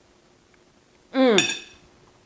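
A single falling closed-mouth "mmm" of delight from a young man chewing a mouthful, about a second in, with a light clink as a metal fork is set down on a ceramic plate.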